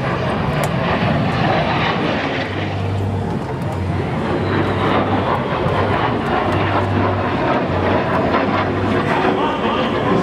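Lockheed T-33 Shooting Star jet trainer flying a display pass: a steady jet rush with a faint whine that slowly falls in pitch.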